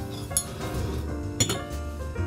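Two sharp clinks of a metal spoon knocking against a mug, about a second apart, over soft background music.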